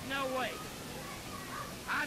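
Men's voices in a heated argument: a short, shouted utterance at the start, a brief lull, then speech resuming near the end.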